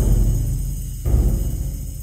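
Musical score with deep drum hits, one at the start and another about a second later, each booming and then dying away under a sustained high ringing layer.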